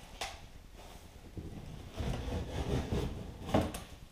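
Handling noise inside a cardboard shipping box as a cable is pulled out: rubbing and rustling against the cardboard and packing, with a short click just after the start and a sharper knock near the end.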